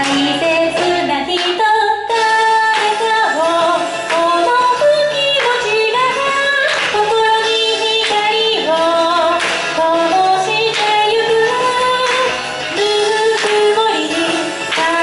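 A woman singing a pop song live into a microphone, her voice moving from note to note over a musical accompaniment with a bass line and a steady beat.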